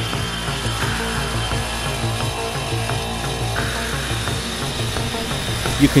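Diamond Products CC300M electric masonry saw, a 2 hp motor driving a 14-inch diamond blade, running steadily with a high whine as it cuts through a paver. Background music with a steady beat plays under it.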